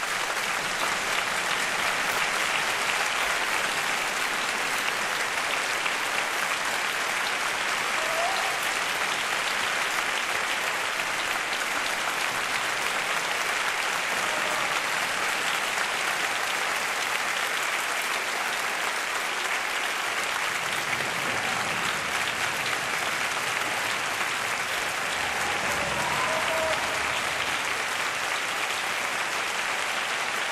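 Steady, sustained applause from a concert hall audience, with orchestra musicians clapping too, at the close of a piano concerto performance.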